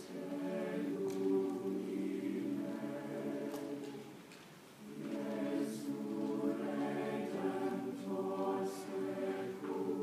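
Choir singing sustained chords in a hall, with a short break between phrases about four seconds in before the voices swell again.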